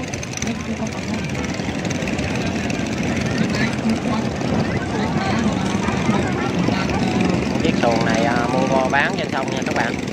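Small boat motors of võ lãi longtail boats running with a steady drone across the river. People's voices come through loudly near the end.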